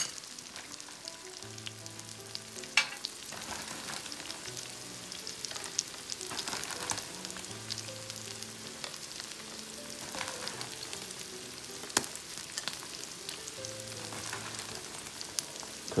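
Scallops on the half shell grilling in scallion oil, sizzling steadily with scattered crackling pops, a sharp one about 3 seconds in and another about 12 seconds in. Faint background music with held notes underneath.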